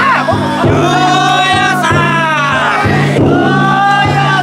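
A festival float's big taiko drum struck in a steady beat, about one stroke every two-thirds of a second, under a crowd of bearers chanting and shouting together in long, rising and falling calls.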